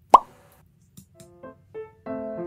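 A single short, loud pop just after the start, then soft piano notes come in one by one and lead into light background music.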